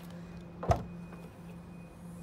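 Mazda2 hatchback tailgate latch releasing with one sharp click, under a second in, as the boot lid is opened from outside, over a steady low hum.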